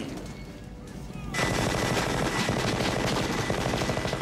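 Film soundtrack of a hand-held M134 minigun (Gatling gun) firing one long continuous burst, a very rapid stream of shots that starts about a second and a half in after a quieter opening.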